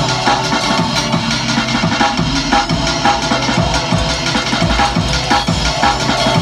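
Electronic dance music with a fast, busy drum beat, mixed live on a DJ controller.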